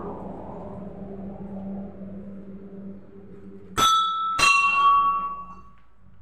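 Metal temple bell struck twice, about half a second apart, each strike ringing on with several clear tones that fade over a second or so. Before the strikes there is a steady low hum.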